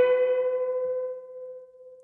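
Goldtop Les Paul electric guitar holding one bent note, pushed up to the flat 7th and left to sustain without vibrato, dying away slowly until it has nearly faded out near the end.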